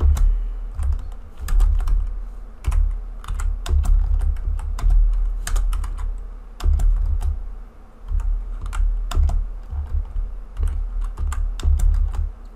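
Typing on a computer keyboard: keystrokes in short, irregular runs with brief pauses, each click carrying a low thud.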